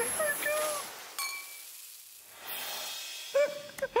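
A TV show's logo transition. A voice trails off, a short electronic sound effect with a few steady tones cuts in, a swish of noise follows, and voices come back near the end.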